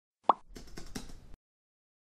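Intro sound effect: a single short pop a third of a second in, followed by about a second of soft hiss with a few faint clicks, then silence.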